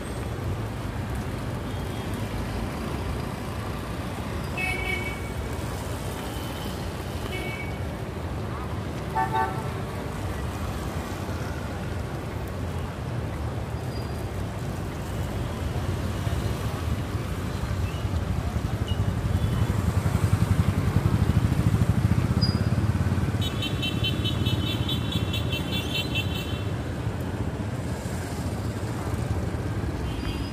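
Busy city street traffic on wet pavement: motorbike and car engines with tyre noise, swelling as vehicles pass close about two-thirds of the way through. Short horn toots sound a few times early on, and a rapidly pulsing high beeping runs for about three seconds near the end.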